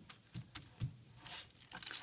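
Faint rustling and crinkling of baking paper and a stiff melted-plastic disc being handled and lifted, with a few soft ticks.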